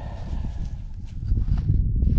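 Low, uneven rumbling and rustling right at the microphone, growing stronger in the second half, with a few faint clicks.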